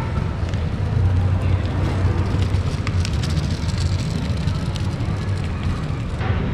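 Outdoor ambience in a paved pedestrian street: a steady low rumble with a few faint clicks and distant voices of passers-by.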